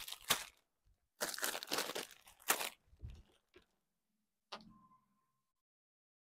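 Clear plastic saree packets crinkling and rustling as they are handled, in several bursts, then a single click about four and a half seconds in.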